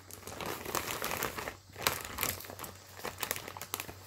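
Rustling with scattered irregular clicks as a beaded macrame plant hanger is handled close to the microphone, with a brief lull about one and a half seconds in.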